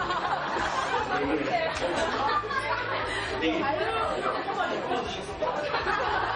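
Many voices talking over one another in a large hall.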